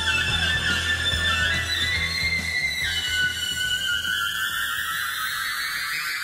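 Rock instrumental with an electric lead guitar holding long, singing high notes: the line drops a step a little before halfway, then glides slowly upward in pitch. Bass and drums thin out behind it.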